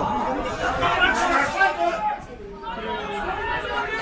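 Spectators talking close to the microphone, in a conversational chatter with a short pause a little past halfway.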